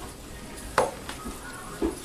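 A spatula clinking and scraping in an electric skillet as browning ground sausage is broken up, with two sharp knocks about a second apart over faint sizzling.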